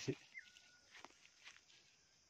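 Faint animal call: one short, thin cry that falls in pitch about half a second in, with a few light clicks.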